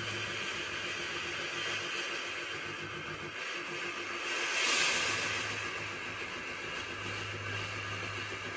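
Steam generator iron hissing out bursts of steam from a 50-50 water and white vinegar mix, pressed through to blast limescale out of the soleplate. The hiss swells to its loudest about halfway through, over a low hum. The iron may not yet be fully up to temperature.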